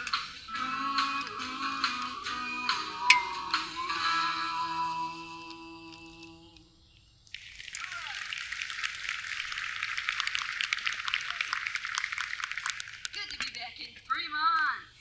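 A live band's song ending, its last guitar-backed chord ringing out and fading away over about six seconds. After a brief gap, an audience claps for about six seconds.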